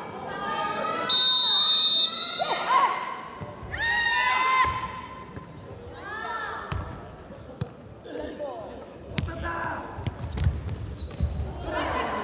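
Jokgu match play: a short high whistle about a second in, players shouting to each other, then the ball being kicked and headed back and forth with sharp thuds that echo in the hall.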